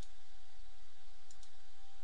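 Two computer mouse clicks, about a second apart, over a steady low hum.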